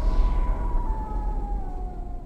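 Eerie sound effects: a deep rumble with a thin wailing tone that slowly falls in pitch, fading away toward the end.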